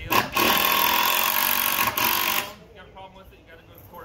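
A power tool runs close by in one loud burst of about two and a half seconds, with a brief dip near the two-second mark, then stops.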